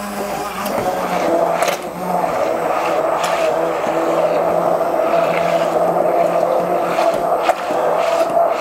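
Electric stick blender running in a glass bowl, puréeing strawberries with cream cheese: a steady motor hum that dips briefly about two seconds in and again near the end.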